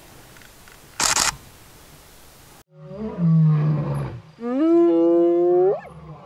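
Faint outdoor ambience with one brief burst of noise about a second in, then a sudden cut to a loud drawn-out animal call that holds low and rises in pitch before stopping just before the end.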